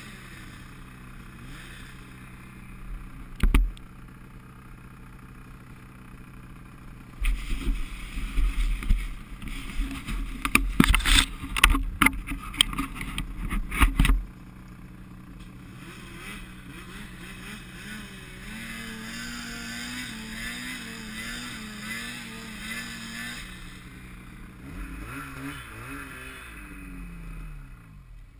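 Snowmobile engines idling steadily in deep snow. From about seven to fourteen seconds in there is a stretch of loud, irregular knocks and rumble, and later an engine note wavers up and down.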